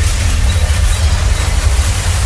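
A loud, steady low rumble with an even hiss above it, unbroken throughout.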